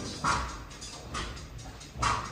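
Two short, high vocal bursts from the choir singers, about a quarter second and just over a second in, during a quiet stretch of the song.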